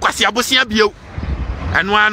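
A man talking, with a pause about a second in, filled by a low rumble.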